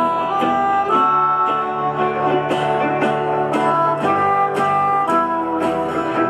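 Live band playing an instrumental break. A harmonica carries the melody in held notes over strummed guitar, mandolin and bass guitar, with a steady plucked rhythm.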